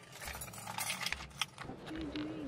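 Keys jangling with a scatter of light clicks and rattles as they are handled inside a car.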